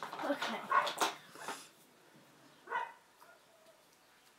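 Glass nail polish bottles clinking and rattling as they are handled, dying away about two seconds in. Near the three-second mark comes one short, high yelp.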